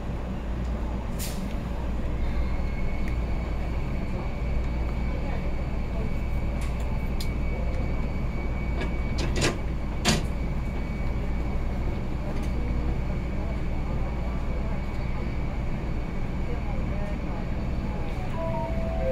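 Metro Cammell electric multiple unit standing still, its onboard equipment giving a steady low hum. A thin steady high whine joins about two seconds in, and a few sharp clicks come around the middle.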